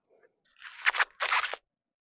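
Green ear of corn crunching and tearing as it is picked and husked by hand: two crackly bursts of husk and stalk breaking, about half a second apart.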